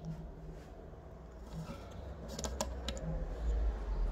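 A hot soldering iron's tip is pressed against a plastic sticker on a metal power-supply case to burn holes in it. A few light clicks come a little past halfway, over a low handling rumble that grows toward the end.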